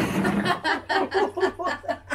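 A woman laughing hard: a loud sustained burst that breaks into quick rhythmic bursts, about five a second.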